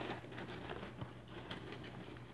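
Faint rustling of a hand in a plastic bag of popcorn, with a few soft clicks and crinkles.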